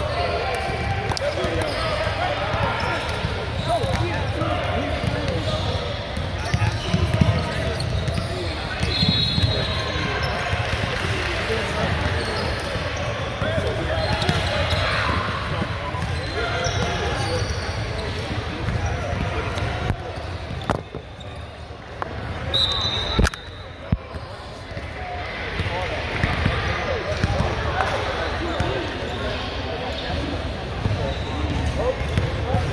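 Basketballs being dribbled on a hardwood gym floor under the indistinct chatter of many players' voices in a large gym, with a sharp knock a little over two-thirds of the way through.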